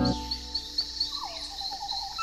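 Rainforest ambience: an insect, cricket-like, chirps steadily in a high pitch about four times a second. From about a second in, a few whistled calls that fall in pitch join it.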